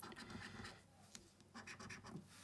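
A coin scratching the scratch-off coating of a lottery scratchcard, faint, in short strokes.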